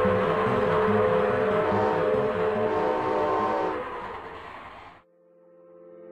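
Cartoon steam-train sound effect: a locomotive chugging with a whistle. It fades out about four to five seconds in. Near the end a soft sustained musical tone fades in.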